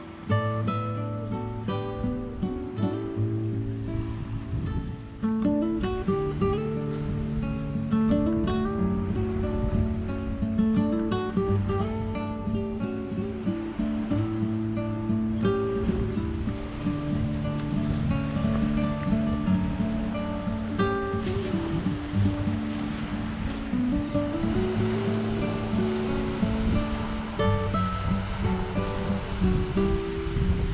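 Background music on acoustic guitar: a picked melody over steady bass notes.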